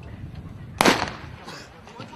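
Starting pistol fired once, about a second in: a single sharp shot with a short echo, the signal that starts a middle-distance race.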